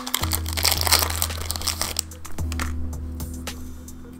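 Booster pack wrapper crinkling as it is torn open, dense crackle for about two seconds and then a few scattered clicks, over background music with a steady bass.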